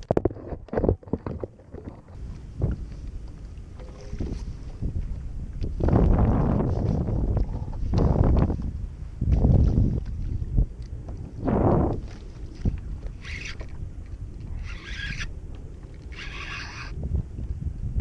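Wind buffeting the camera microphone in irregular gusts, with water lapping against a plastic kayak hull. A few short hissing bursts come near the end.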